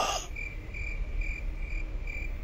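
Crickets chirping in a steady, even pulse, a few high chirps a second.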